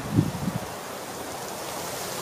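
Steady rustling hiss of wind through birch leaves, with a few low gusts buffeting the microphone in the first half second.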